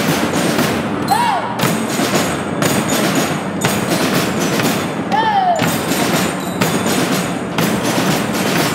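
A school drum-and-lyre band playing together: snare drums and bass drums beating steadily under the ringing of bell lyres.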